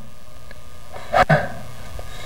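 A man's short breathy snort in two quick pulses about a second in, over a steady room hum.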